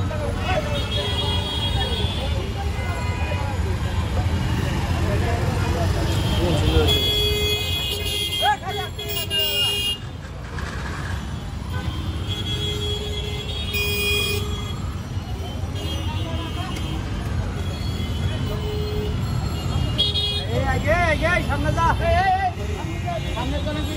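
Congested street traffic: a steady rumble of idling motorcycle engines with several long horn honks, the clearest between about 6 and 14 seconds, and people's voices in the crowd.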